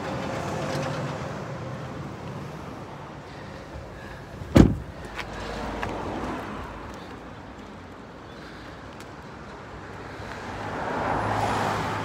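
A van's front door shut with a single hard thump about four and a half seconds in, over a steady background of road traffic that swells a little near the end.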